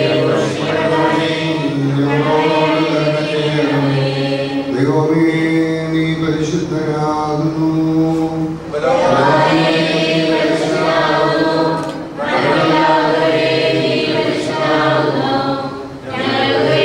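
Men's voices chanting a funeral liturgical hymn together through a microphone, in long held phrases with brief pauses for breath between them.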